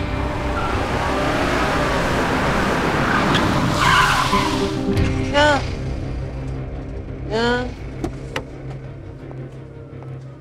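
An SUV approaching and braking hard, its tyres skidding to a stop about four seconds in, over a steady, sustained music score.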